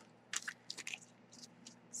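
Clear plastic die packaging crinkling faintly in several short, soft bursts as a thin metal die is handled and slid out of its sleeve.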